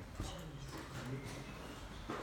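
Faint, indistinct murmuring voices in a room, with a single light click shortly after the start.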